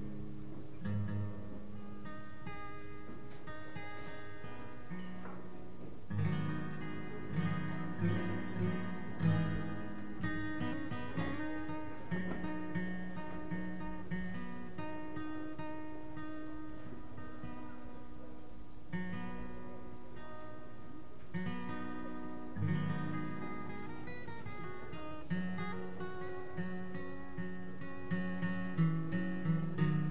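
Solo acoustic guitar playing plucked notes and chords, with no singing; it grows busier and louder with picked runs about six seconds in and again in the last third.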